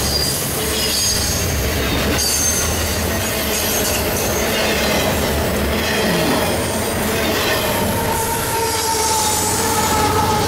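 Freight cars rolling past at close range, wheels rumbling on the rail with repeated high-pitched wheel squeal. Near the end a steady droning tone comes in as a diesel locomotive draws level.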